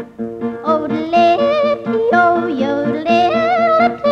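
Female country singer yodelling, her voice flipping quickly up and down in pitch over a steady, rhythmic accompaniment.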